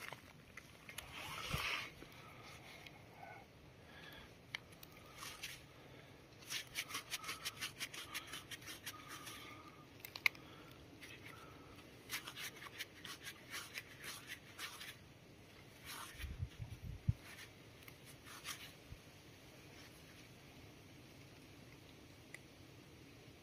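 Faint scraping and rustling of a gloved hand picking a coin out of loose soil and dry leaves and handling it, in quick runs of small scratches, with a dull bump about three-quarters of the way through.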